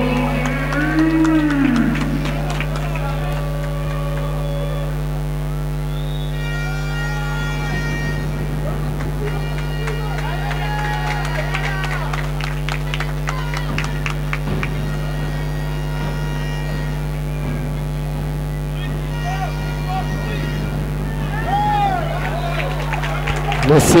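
Indoor handball arena ambience: music from the hall's sound system mixed with scattered crowd voices, over a steady low electrical hum on the broadcast audio.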